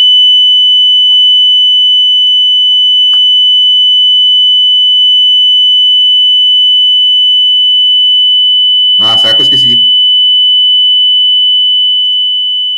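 Loud, steady 3 kHz test tone from a tone-generator app played at maximum volume through a speaker, holding one unchanging pitch.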